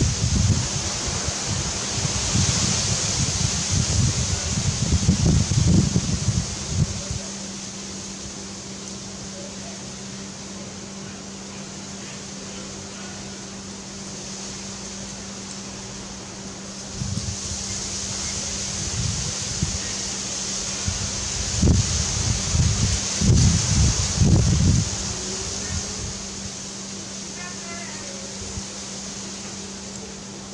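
Wind buffeting the microphone in two spells of gusts, one over the first several seconds and another in the last third, over a steady low hum and a constant hiss.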